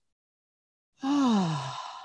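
A woman's sigh about halfway in: a breathy, voiced exhale, falling steadily in pitch and lasting about a second, breathed out while holding a deep forward-fold hamstring stretch.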